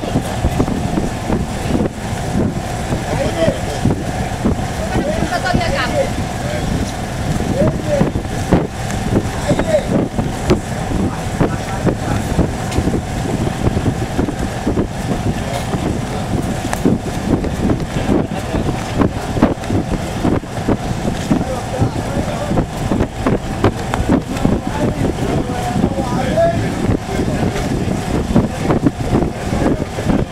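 A large boat's engine running steadily, with indistinct voices calling over it.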